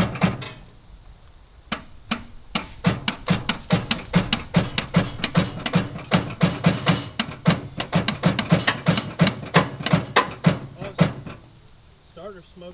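A hammer banging repeatedly on the bulldozer's starter, in a fast, even run of metal knocks at about three to four blows a second that stops about a second before the end. It is an attempt to jar the starter or the locked-up engine free.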